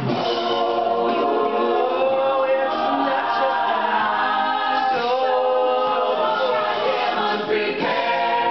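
Mixed-voice a cappella group singing in harmony, holding chords that change every few seconds.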